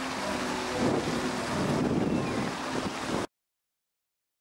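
Steady outdoor rush of wind on the microphone mixed with the sound of water. It cuts off abruptly a little after three seconds in.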